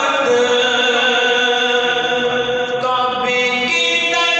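A man singing a naat, an Urdu devotional poem in praise of the Prophet, in a chant-like melody. He holds long notes and moves to a new pitch about three seconds in.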